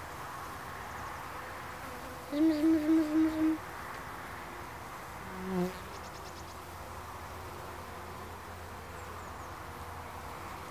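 Steady hum of a honeybee colony in an open hive. About two seconds in, a louder pitched, pulsing hum lasts just over a second, and a brief lower one comes near the middle.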